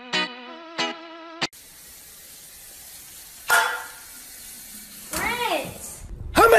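Plucked guitar music, three notes, stops abruptly about a second and a half in; then a steady hiss of road noise inside a moving car's cabin, with a brief vocal sound midway and a voice rising and falling in pitch near the end.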